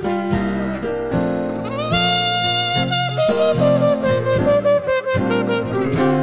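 Muted B&S trumpet playing a blues-jazz solo of long held notes with slides between them, over strummed acoustic guitar chords.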